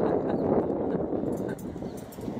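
German Shepherd puppy licking ice cream out of a plastic cup: quick wet laps and smacks with the plastic cup crackling, easing off near the end.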